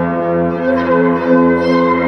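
Yaybahar, a bowed string coupled through long coiled springs to two frame drums, sounding a sustained, reverberant ringing tone with many overtones.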